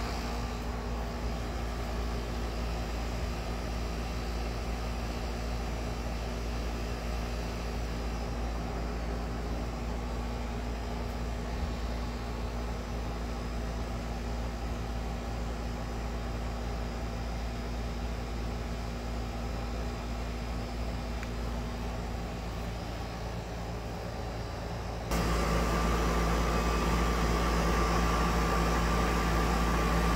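Outdoor air-conditioner condenser unit running with a steady mechanical hum. About 25 seconds in it abruptly gets louder and a steady whine comes in on top.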